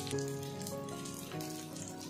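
Soft background music over a faint, steady sizzle of egg-dipped bread slices frying in oil on a flat griddle (tawa).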